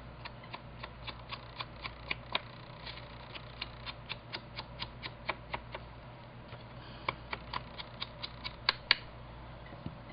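Ink applicator dabbed quickly and repeatedly against the edges of a cardstock card base to ink it with Distress ink: short, sharp taps at about four a second, pausing briefly a little past halfway, the loudest few near the end.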